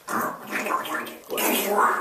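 Young people's voices making wordless, guttural noises and laughing in three short bursts.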